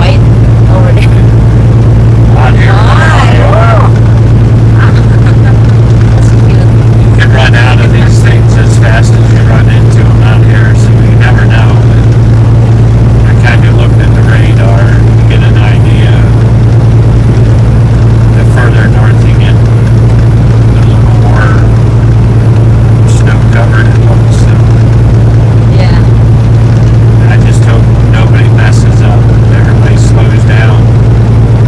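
Steady low drone of a semi truck's engine and road noise, heard inside the cab while cruising at highway speed.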